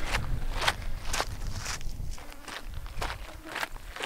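Footsteps on a dry, rocky dirt trail, about two steps a second, each a short crunch of shoe on grit and stone.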